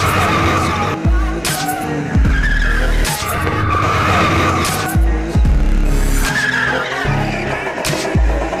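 Car tyres squealing in repeated screeches of about a second each as a car drifts, mixed with music that has a heavy bass beat.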